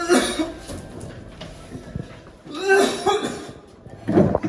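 A person coughing in two bouts, one right at the start and another about three seconds in.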